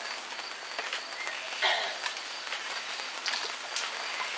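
Quiet room ambience: a faint steady hiss with a thin high tone, scattered light ticks throughout, and a brief rustle about a second and a half in.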